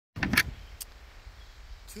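A brief burst of rustling and clicks from the phone being handled as recording starts, then one more click, over a steady low rumble of wind on the microphone.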